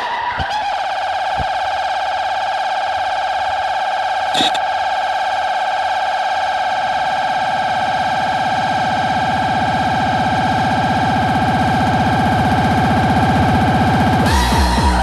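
Early hardcore techno breakdown: one long, steady held synthesizer note with a low buzzing layer swelling up underneath from about halfway, the whole slowly getting louder as it builds. A brief blip about four seconds in.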